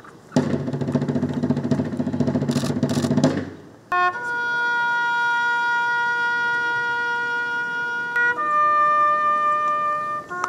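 A few seconds of full band music with some sharp drum strokes, which stops abruptly; then a lone bugle sounds a slow call of long, held notes, stepping up to a higher note about four seconds later.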